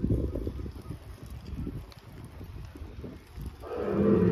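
The sound-and-light show's soundtrack over loudspeakers: a low, uneven rumble, then music swells in sharply near the end.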